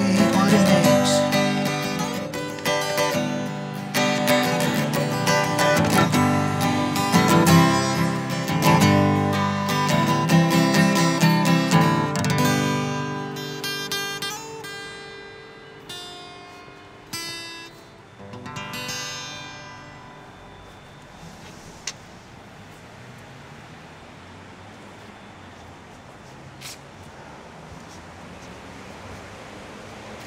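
Solo steel-string acoustic guitar strumming the song's closing chords. The strokes thin out about twelve seconds in, and the last chords ring and die away by about twenty seconds, leaving only low steady background noise with a couple of faint clicks.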